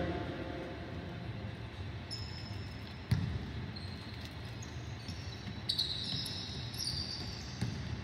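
Basketball bouncing on a hardwood court, with one hard bounce about three seconds in and lighter knocks after it. Short high squeaks of basketball shoes on the floor come twice, echoing in a large arena.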